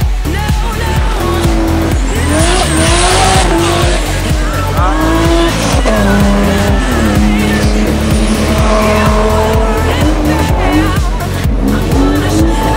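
Dance music with a steady beat over a drifting car, a BMW E36 3 Series: its tyres squeal loudly a couple of seconds in, and its engine revs rise and fall as it slides past.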